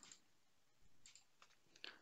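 Near silence with a few faint computer mouse clicks, one of them just before the end.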